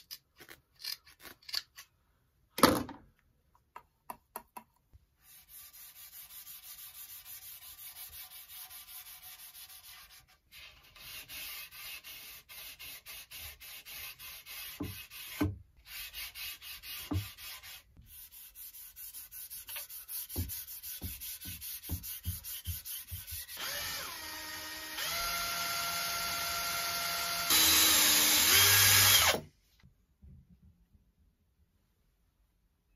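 Rhythmic rubbing strokes of a pad working Osmo Polyx-Oil into ash and mahogany rails, with a few knocks between runs. Near the end a louder steady sound with several held tones takes over and cuts off suddenly.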